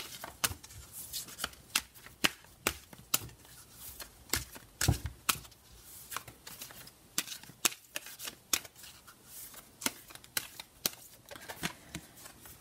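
A deck of large oracle cards being shuffled overhand by hand: an irregular run of card slaps and taps, a few a second, with one louder low thump about five seconds in.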